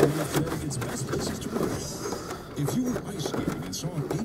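A radio announcer talking in the background, with scattered clicks and knocks of hands working on metal parts behind a car dashboard.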